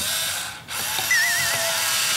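Cordless electric wine opener's motor whirring as it drills its corkscrew into a wine bottle's cork, with a short break about half a second in. A wavering whistle-like tone runs over the middle of it.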